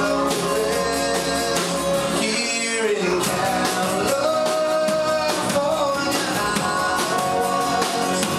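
Live rock band playing a song: strummed acoustic guitar with electric guitar and bass, and a man singing the melody into the microphone.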